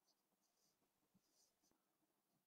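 Near silence.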